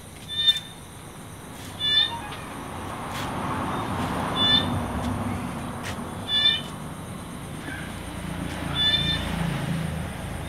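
An animal's short high call, repeated five times at intervals of about two seconds, over a low rumble that grows louder from about three seconds in.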